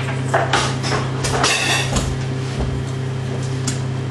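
Sharp clicks and knocks, with a short rattle about a second and a half in, as money is fed into the acceptor of a homebuilt Bitcoin ATM. A steady low electrical hum runs underneath.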